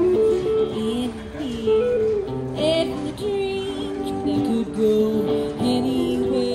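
Live song: a woman singing, with a wavering held note about halfway through, accompanied by acoustic and electric guitar.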